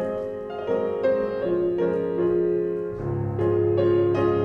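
Piano accompaniment for a ballet class exercise, with chords and melody notes moving at an even, moderate pace.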